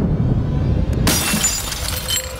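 A small hand mirror's glass shatters as it hits the ground about a second in, followed by a few tinkling clinks, over background music.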